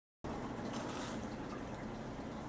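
Faint steady background noise: room tone, with no distinct sounds.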